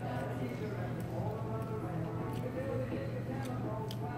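Restaurant dining-room background: other diners' voices talking, a steady low hum, and a few sharp light clinks of tableware, the last near the end as a plastic cup is picked up.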